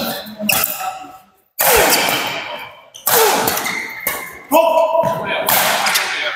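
Badminton rally in a hall: several sharp racket hits on the shuttlecock, each trailing off in the hall's echo, with shoe squeaks on the court mat and players' voices.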